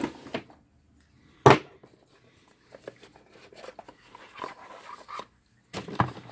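Handling noise on a wooden workbench: one sharp knock about a second and a half in, then faint scraping and rustling as a small box is picked up and handled.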